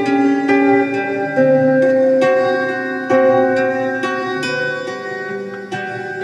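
Classical acoustic guitar fingerpicked, with plucked notes and chords ringing out and fading a couple of times a second.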